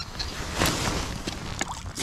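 Wind rumbling on the microphone, with a short rustling swoosh of clothing about half a second in as the arm holding the ice-fishing rod moves.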